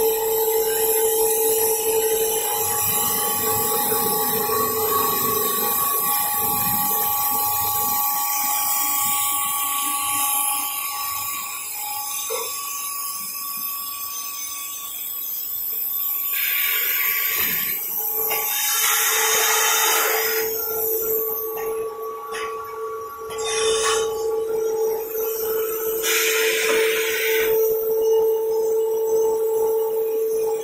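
A paper pulp egg tray forming machine running, with a steady high-pitched whine throughout. Three short hisses of air come about halfway through, a few seconds later, and again near the end.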